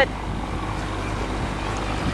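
Tartan 34C sailboat's inboard engine running steadily as the boat motors along: a constant low drone with water and air noise over it.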